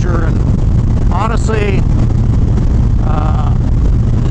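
Harley-Davidson Dyna Street Bob's Twin Cam 103 V-twin running steadily at highway cruising speed, a continuous deep rumble mixed with wind rushing over the microphone.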